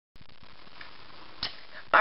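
Low, steady hiss of room tone with a single short click about one and a half seconds in.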